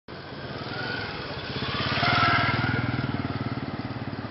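Motorcycle engine running as the bike passes close by, growing louder until about two seconds in and then fading as it rides away.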